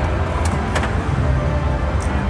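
Casino floor din: a steady low rumble of slot machines and their music, with two sharp clicks within the first second.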